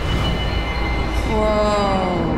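A loud rumbling sound effect; from about the middle, a squealing tone slides down in pitch over it.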